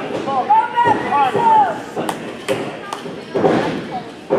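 Spectators yelling in high voices in a large hall, then three sharp smacks about half a second apart from the wrestling ring, followed by a heavier thud near the end.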